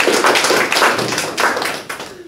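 Audience applauding, many hands clapping densely, fading out near the end.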